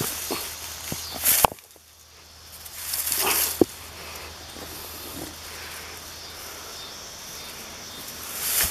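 Footsteps and rustling through dry grass, with handling knocks on the handheld camera: a sharp knock about a second and a half in, a swell of rustling around three seconds in that ends in another knock, then a steady faint hiss.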